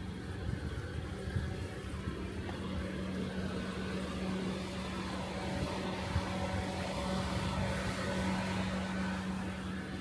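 A steady low mechanical hum, with an uneven low rumble from wind on the microphone.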